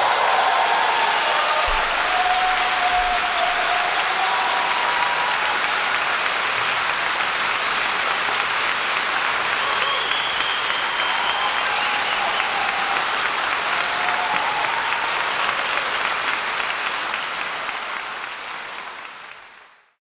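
Audience applause, steady clapping that fades out over the last few seconds.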